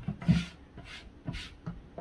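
A few short rubbing and knocking handling noises as a white pot on wooden legs is picked up and turned on a tabletop.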